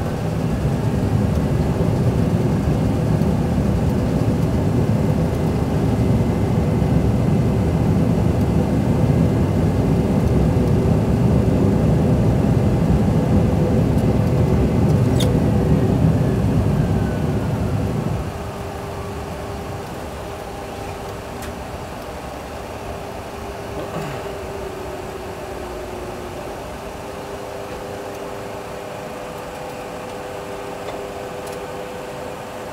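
Boeing 737 Classic full flight simulator's sound system playing the landing rollout: a loud, steady rumble of the engines in reverse thrust and the wheels on the runway, with a high engine whine that slides down in pitch near its end. About 18 seconds in the rumble stops abruptly, leaving a quieter steady hum of the engines at idle.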